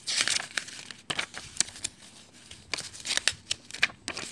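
Glossy paper leaflets and coupon inserts rustling and crinkling as they are handled and shuffled, in irregular bursts with a quieter pause near the middle.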